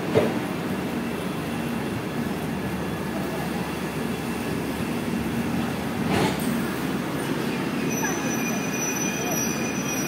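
Express train's passenger coaches rolling slowly along the platform with a steady rumble, with a knock shortly after the start and another about six seconds in. A thin, high wheel squeal sets in near the end.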